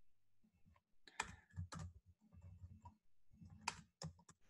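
Faint computer keyboard keystrokes: a handful of separate taps, a cluster a little over a second in and one more near the end, as text in a document is edited.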